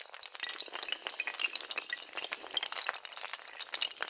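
Sound effect of a long chain of small hard tiles toppling like dominoes: a dense, rapid clatter of light clicks and clinks that starts abruptly and keeps going without a break.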